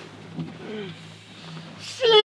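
Quiet lull inside a gondola cabin: a faint steady low hum, a soft brief voice sound about two-thirds of a second in, and a voice starting near the end.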